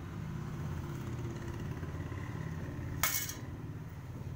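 A steady low rumble, like a motor running nearby, fills the background. About three seconds in, galvanized steel electrical boxes clink once against each other with a brief metallic clatter.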